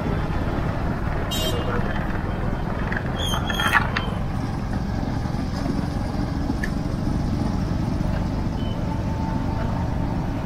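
Steady low rumble of riding a two-wheeler through city traffic: engine, road and wind noise. Two short higher sounds from the traffic stand out, about a second and a half in and a louder one near four seconds.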